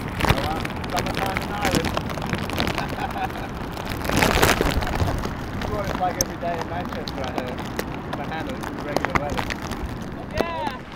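Steady wind and rain noise on the microphone, swelling louder about four seconds in, with a man's voice speaking over it.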